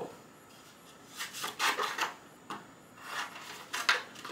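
Scissors cutting through a sheet of light purple paper, in two runs of short snips, the first about a second in and the second about three seconds in.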